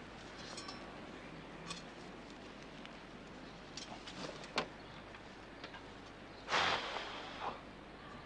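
Faint rustling and a few soft clicks as plants are lifted out of garden soil, with one louder, half-second rustle about six and a half seconds in.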